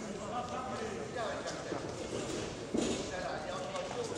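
Voices shouting from ringside in a hall, over the boxers' footsteps shuffling on the ring canvas, with one sharp thump about three seconds in.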